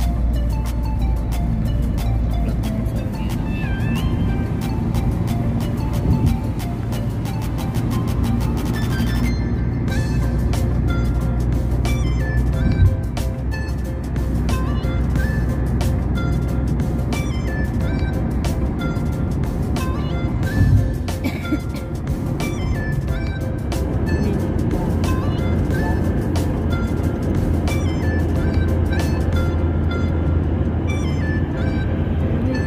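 Music with a steady, quick beat and short melodic notes, over the low steady hum of a car driving.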